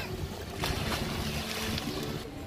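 A splash as a child jumps feet-first into lake water, starting about half a second in, followed by about a second of rushing, churning water.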